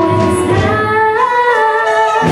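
A young girl singing a slow, sad song into a microphone over band accompaniment.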